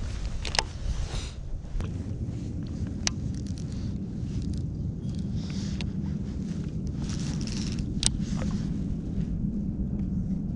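Steady low rumble with a few sharp clicks as a baitcasting reel is handled, the loudest click near the end.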